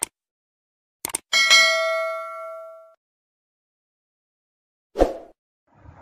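Subscribe-button animation sound effects: a short click, a quick double click about a second in, then a bell-like notification ding that rings and fades over about a second and a half. Another short sound effect comes near the end.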